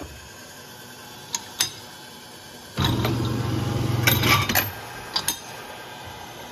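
Two light metallic clicks of brass cases, then the homemade annealing machine's electric motor starts about three seconds in and runs with a steady hum for about two seconds, with brass cases clinking against the metal near its end.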